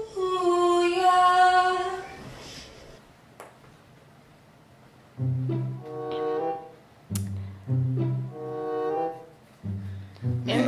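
A woman's solo singing voice holds a note that steps down and fades out about two seconds in. After a short lull, slow, drawn-out low sung notes follow in three phrases.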